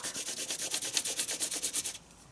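HB graphite pencil dragged on the side of its lead across paper in quick back-and-forth shading strokes, about seven scratchy rubs a second, stopping suddenly at the end. The strokes are laying down an even, lighter-pressure tone for a block of a value scale.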